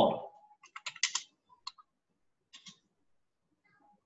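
A few keystrokes on a computer keyboard, typing a short word: a quick cluster of taps about a second in, then two more and a last pair near the three-quarter mark.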